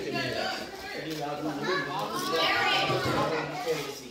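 Several voices, children's among them, talking and calling out over one another in lively chatter with no single clear speaker.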